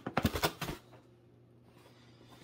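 A cardboard product box handled and turned over in the hands: a quick run of taps and rustles within the first second.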